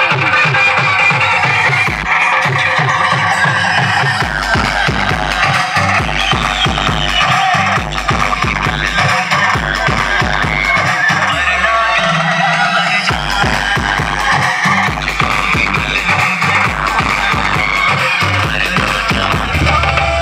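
Loud Indian dance music with heavy bass played through a stack of DJ loudspeaker cabinets. A deep, pulsing bass line comes in about four seconds in, drops out briefly near the middle and returns.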